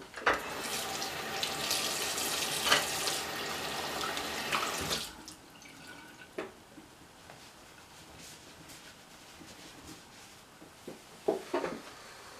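Bathroom sink tap running as hands are rinsed under it for about five seconds, then turned off. A few faint knocks and rustles follow.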